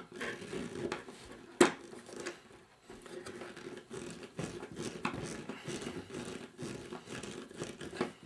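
A Phillips screwdriver turned by hand, driving a light switch's mounting screw into an electrical switch box: faint, irregular scratching of the screw and handling, with one sharp click about a second and a half in.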